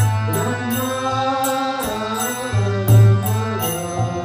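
Devotional kirtan music: a harmonium holding sustained chords under a chanted mantra, with deep bass strokes from a mridanga drum and a steady high tapping beat about twice a second.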